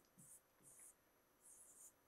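Faint pen strokes scratching on an interactive whiteboard screen while "n(P∪" is written: three or four short, quiet, high scratches.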